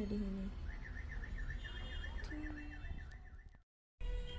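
A faint warbling electronic alarm, its pitch rising and falling about five times a second, over a low steady rumble; it cuts off just before the end.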